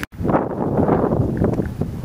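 Wind buffeting the microphone: a loud, gusty rumble that fluctuates throughout, with a brief cut-out just after the start.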